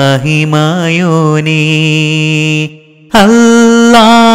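A single voice singing a Malayalam Islamic devotional song (madh). It holds a long, wavering note to end a line, breaks off briefly, then starts "Allah" on a higher note near the end.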